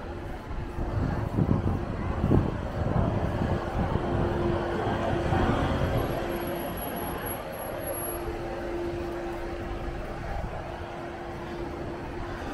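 Street traffic on a city road: a vehicle passing, loudest from about one to six seconds in, with a steady hum through the second half.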